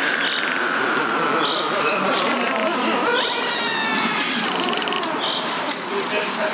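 Beatless intro of a dark psytrance track: a sound-design texture of animal-like calls, with short high chirps recurring about every second and a half over a dense warbling bed, and one long tone gliding slowly downward.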